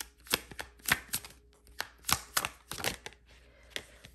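A deck of tarot cards being shuffled by hand, the cards giving about a dozen sharp, uneven clicks and slaps.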